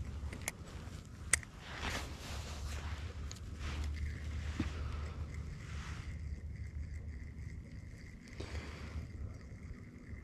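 Steady low rumble of open-air boat ambience, with two sharp clicks about half a second and just over a second in from handling the spinning rod and reel, and a faint steady high whine in the second half.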